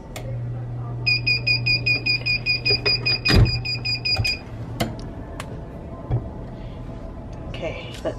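Heat press timer alarm beeping rapidly for about three seconds, signalling the end of the press cycle, over a low steady hum, with one sharp click partway through.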